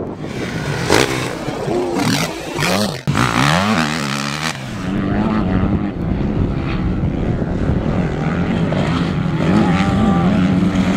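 The four-stroke single-cylinder engine of a 2010 KTM 250 SX-F motocross bike being ridden hard, its revs rising and falling through the first half. After a sudden break about three seconds in, it holds a steadier high rev.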